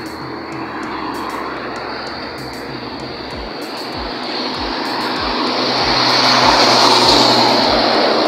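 Heavy articulated lorry coming up from behind and passing close by: its diesel engine and tyre noise swell to a peak about six to seven seconds in over a steady low engine hum.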